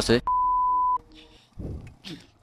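A single steady electronic beep, one pure tone lasting under a second, which cuts in abruptly just as a man's speech breaks off and stops just as abruptly.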